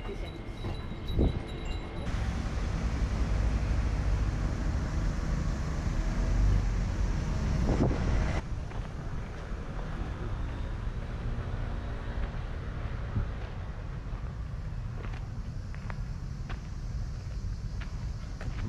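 Wind rumbling on the microphone outdoors, heaviest for several seconds in the first part. It changes abruptly about two seconds in and again about eight seconds in, then carries on weaker.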